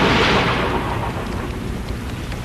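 Storm sound effect: a roll of thunder dying away over about the first second, over steady heavy rain.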